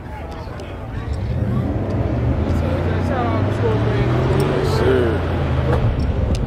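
A car engine running at a steady low idle, coming up about a second in and dropping away near the end, with voices talking in the background.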